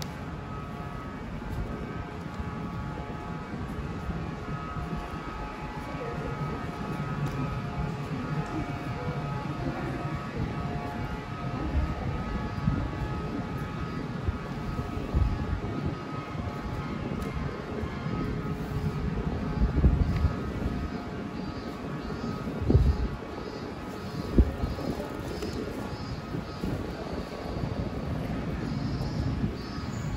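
Street ambience in a covered shopping arcade: a steady low rumble of traffic with faint music of held tones. A few dull thumps stand out later on, and near the end a fast, high, evenly repeated chirping begins.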